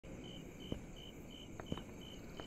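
Faint insect chirping: a short, high pulse repeated evenly about three times a second, with two soft knocks.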